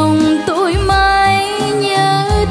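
A woman singing a Vietnamese song in bolero and cải lương style over instrumental accompaniment with a bass line. She holds long notes and adds a quick wavering ornament about half a second in.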